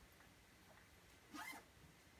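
One short zip of a small fabric pouch's zipper about a second and a half in, otherwise near silence.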